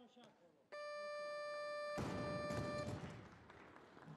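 Electronic down-signal buzzer at a weightlifting platform, one steady tone about two seconds long, telling the lifter to lower the bar. About two seconds in, a burst of noise from the hall begins and fades over the next second or so.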